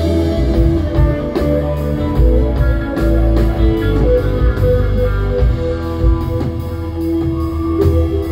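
A live band plays an instrumental passage: electric guitar notes over bass and drums through the venue's PA.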